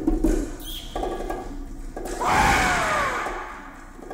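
Percussion music: a few bass drum strokes, then about two seconds in a loud pitched call that glides downward for about a second and fades away.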